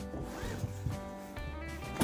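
Car seatbelt webbing pulled out of its retractor, a short zipper-like rasp about half a second in, over background music.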